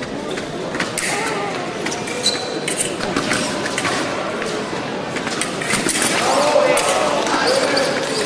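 Foil fencers' footwork on the piste: quick footfalls, stamps and short shoe squeaks, over voices and chatter in a large hall.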